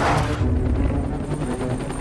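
Dramatic film-trailer music with a deep steady pulse, opening on a sudden loud hit.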